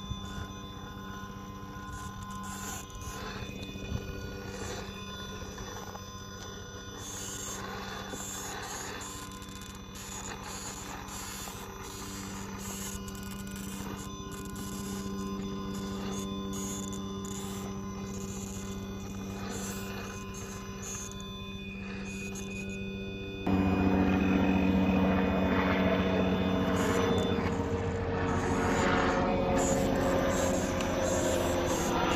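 Radio-controlled rock crawlers' brushless electric motors whining at crawling speed, a steady hum that shifts in pitch with the throttle. About three-quarters of the way through it jumps suddenly louder.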